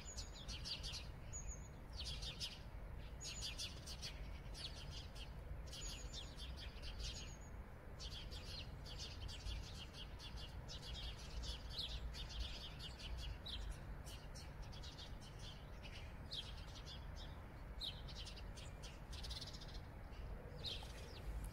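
Small birds chirping in quick, repeated runs of short high notes, with brief gaps, over a steady low rumble.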